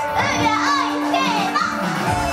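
A high young woman's voice calling out into a microphone over a live pop backing track that has dropped to a single held note; the full band backing comes back in at the end.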